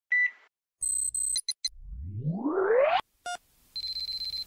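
Synthesized electronic sound effects: a quick run of short beeps and blips, then a long rising pitch sweep that cuts off suddenly about three seconds in. Another short beep follows, and a steady high tone starts near the end.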